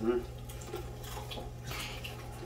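A man's short 'hmm', then faint scattered sounds from the video playing in the background over a steady low hum.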